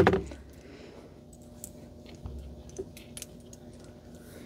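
Faint scattered clicks and light rustling of a crocheted yarn swatch and a measuring tool being handled and laid flat, over a faint steady hum.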